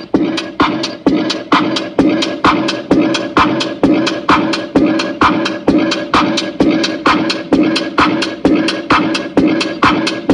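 Loud music with a sharp, steady beat of about two strokes a second, played through a pickup-bed car audio box of midrange speakers and horn tweeters. One midrange cone is torn, giving the sound a strange noise like something loose shaking.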